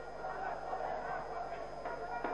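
Low, steady background noise of a football stadium heard through a TV broadcast: the ambient sound of the crowd and the pitch during open play.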